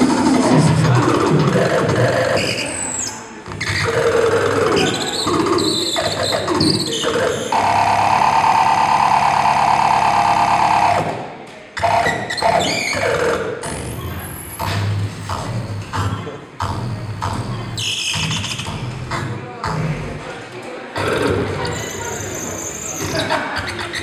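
Circuit-bent children's toy groovebox sounding its electronic tones and samples, the pitch warping and gliding as the kiwi fruit wired in as its pitch resistor is squeezed and probed. About eight seconds in, one tone holds as a steady buzz for about three seconds, then cuts off.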